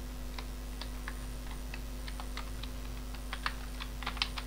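Typing on a computer keyboard: irregular light key clicks, a quick run of them near the end, over a steady low hum.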